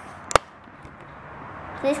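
A single sharp click about a third of a second in, over faint background noise, followed near the end by a child's voice asking "please".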